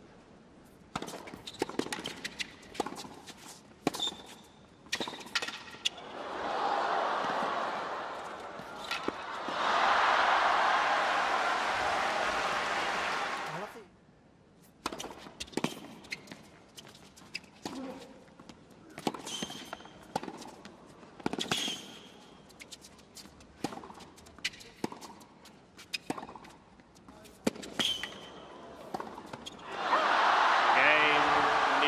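Tennis rally on a hard court: sharp racket strikes and ball bounces, then crowd applause rising in two swells from about six seconds in and cut off suddenly near fourteen seconds. After the cut, ball bounces and racket hits come again as the next point is played.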